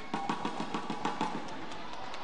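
Fast, even percussive beats, about six to seven a second, from the arena crowd.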